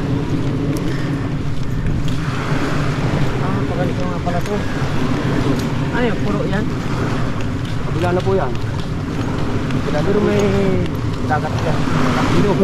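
Steady wind rumbling on the microphone, with brief bits of men's talk every couple of seconds.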